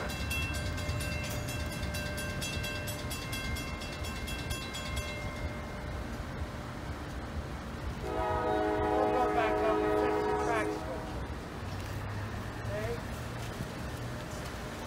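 Railroad crossing warning bell ringing rapidly and evenly, then stopping about five seconds in, while the crossing gates cycle down again in a malfunction. About eight seconds in, a train horn sounds a chord for roughly two and a half seconds.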